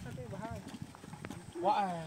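Indistinct men's voices talking, with scattered light knocks and taps in between; a man's voice rises again near the end.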